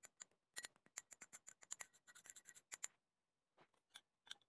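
Faint clicking and scraping of a metal spoon against a glass bowl as a dressing is stirred, a quick irregular run of small clicks that stops about three seconds in, followed by a couple of light taps near the end.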